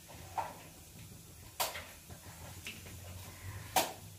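Four sharp knocks and clicks of kitchen utensils and containers being handled and set down, the loudest near the end, over a faint steady low hum.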